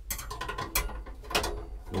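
Loose metal wire pot grate clicking and rattling against the stove's metal case as it is set and shifted on the burner, in several sharp clusters of clicks.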